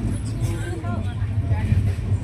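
Steady low rumble of an LHB passenger coach running at speed on the track, heard from inside the coach, with voices talking faintly in the background.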